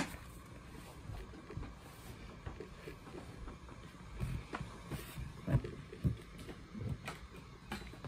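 A deck of tarot cards being shuffled by hand: faint, soft card rustling and light irregular taps, a few slightly louder in the second half.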